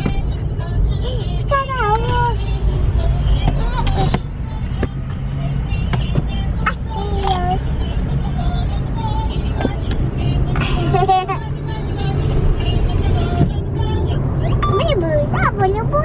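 Car interior noise while driving: a steady low rumble of engine and tyres heard from inside the cabin. A voice, likely a child's, sounds over it now and then with short rising and falling calls.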